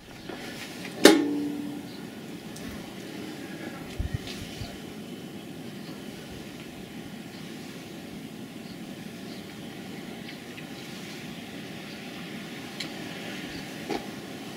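A sharp click about a second in as the mains current is switched on, followed by steady outdoor wind noise with a faint electrical hum.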